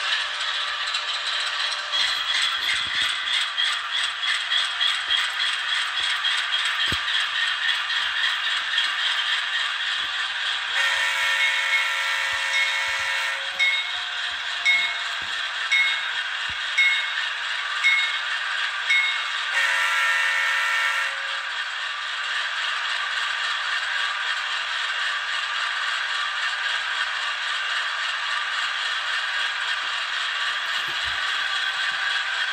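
ESU LokSound V5 Micro decoder sound of a GE Dash 8-40BW diesel, played through a tiny sugar-cube speaker in an N scale locomotive: the engine running steadily with a thin, rattly tone. Partway through, a multi-chime horn sounds for about two and a half seconds, then a bell rings a little over once a second, then a shorter horn blast.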